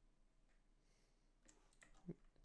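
Near silence: room tone with a few faint computer clicks about one and a half seconds in.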